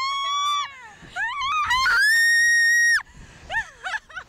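Thrill-ride riders screaming in high, pitched screams: a few shorter screams, then one long high scream held for about a second that cuts off suddenly, followed by short yelps near the end.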